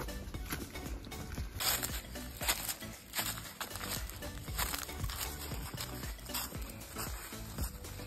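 Hikers' footsteps crunching on a steep, rocky, leaf-covered trail during a climb, about one step a second.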